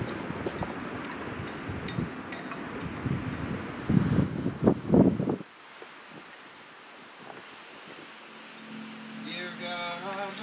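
Wind buffeting the camera microphone, a rumble with handling knocks and a few louder bumps around four to five seconds, cutting off suddenly a little past halfway. A faint hiss follows, and a music track starts near the end.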